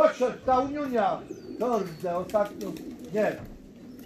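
A man calling racing pigeons down to the loft with a run of drawn-out, sing-song calls of 'chodź' ('come'), each call rising and falling in pitch.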